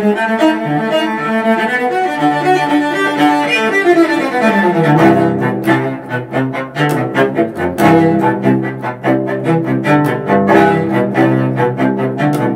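Solo cello played with the bow. Sustained notes for the first few seconds, then a long downward slide about four seconds in, then a run of quick, short, detached notes.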